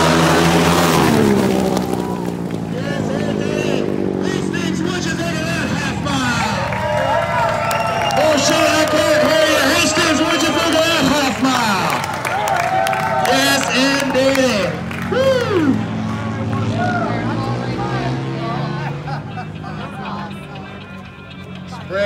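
A flat-track race motorcycle passing, its engine note falling steeply as the throttle is rolled off at the finish. A crowd then cheers, yells and whoops over motorcycle engines running at low throttle.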